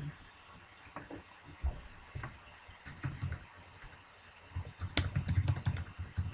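Typing on a computer keyboard: a few scattered keystrokes, then a quick run of keys near the end.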